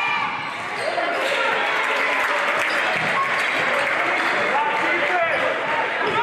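Basketball dribbled on a hardwood gym floor during live play, under a steady din of crowd voices and shouting.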